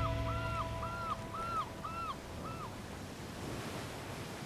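The tail of the background music fades out, ending in a short high note repeated about six times that stops under three seconds in, leaving the steady wash of ocean surf.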